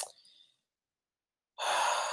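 A man's audible breath, like a sigh, lasting about half a second near the end, after a single sharp click right at the start and a stretch of silence.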